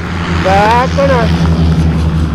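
A woman's excited high-pitched cries, two short calls that rise and then fall in pitch about half a second in, right after a tandem skydiving landing. A steady low hum runs underneath.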